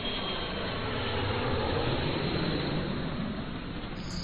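A dull, steady rushing noise from the channel's title-card intro, swelling slightly in the middle and easing off near the end.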